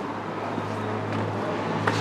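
Steady outdoor street background noise with a low, even hum and no distinct event.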